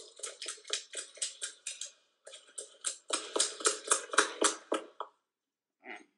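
A quick, regular run of sharp clicks or taps, about four to five a second, broken by a short pause about two seconds in and stopping about five seconds in.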